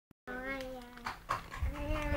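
A young child's voice holding a long, steady note on one pitch for nearly a second, then starting a second held note near the end, with a couple of light clicks between.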